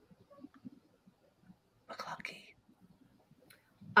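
A quiet stretch with a brief, faint whispered or breathy voice sound about two seconds in.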